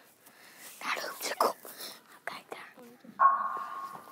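Breathy whispering, then about three seconds in a sudden loud swell with a single steady high tone that holds on.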